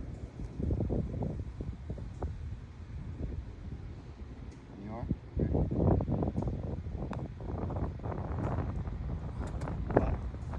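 Wind buffeting the microphone, with faint indistinct voices. Just before the end comes a single sharp click: a putter striking a golf ball.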